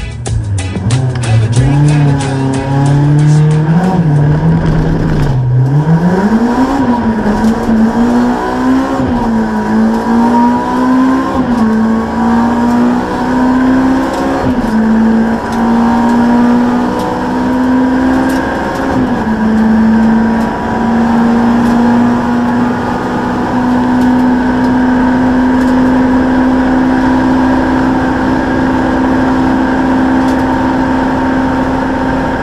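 Honda Civic Type R hill-climb race car, heard from inside the cockpit: its four-cylinder engine pulls away from the start and accelerates hard, the note climbing and dropping back with each quick upshift, then holding a steady high-revving pitch for the last ten seconds.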